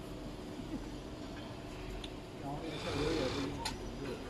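Richpeace mattress protector sewing machine running steadily as fabric is fed through its sewing head, a low even hum, with one sharp click near the end.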